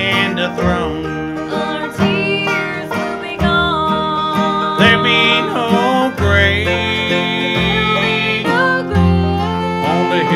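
Bluegrass gospel band playing: mandolin, five-string banjo and acoustic guitar picking over upright bass, with voices singing the melody.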